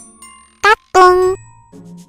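Comic sound effects laid over light tinkling background music: a quick rising whoop a little past halfway, then a loud held tone lasting under half a second.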